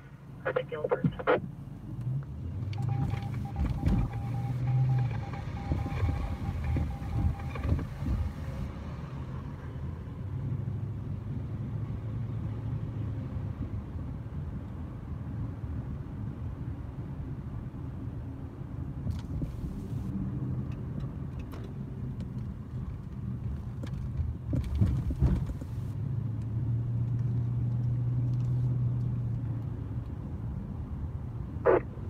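Car engine and road noise heard from inside the cabin while driving, the low engine hum swelling and easing several times. A steady high tone sounds for a few seconds near the start.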